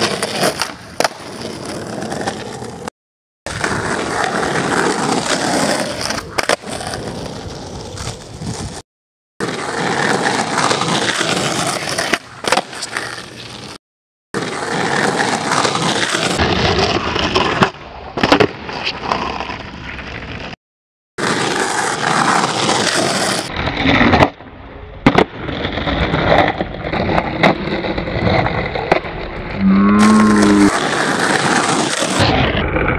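Skateboard wheels rolling on rough asphalt, with the sharp clacks and slaps of the board hitting the ground during flat-ground tricks. The sound breaks off briefly four times, where short clips are cut together.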